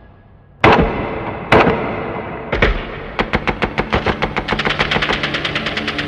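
Rifle gunfire: two loud single shots about a second apart, a third shot near the middle, then a rapid automatic burst of about seven rounds a second that keeps going.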